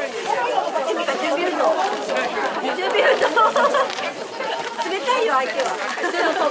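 Several people chattering and talking over one another at close range, with no other sound standing out.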